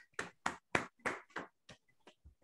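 A person clapping in applause, about four claps a second, the claps growing fainter and sparser near the end.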